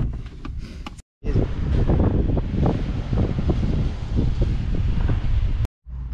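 Wind buffeting the microphone, a loud rumbling noise lasting about four and a half seconds, set between two brief cuts to silence.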